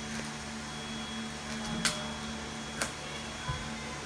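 Gift wrapping paper and ribbon being handled as a wrapped box is unwrapped. There are two sharp crackles in the middle and a soft thump near the end, over a steady hum.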